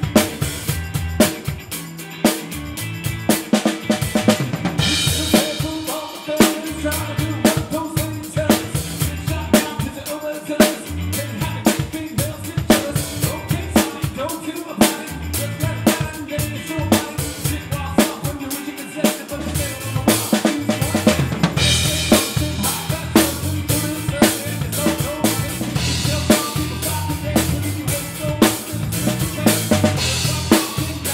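Live band playing, heard from behind the drum kit: steady kick, snare and cymbal strokes are loudest, over bass and guitar.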